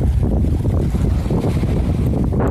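Wind buffeting a phone's microphone: a steady low rumble of wind noise.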